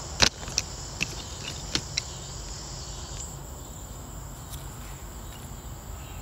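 Steady high-pitched insect chorus, with a few sharp clicks in the first two seconds, the loudest about a quarter second in.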